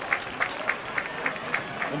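Crowd noise from the stands of a small football stadium, with some clapping.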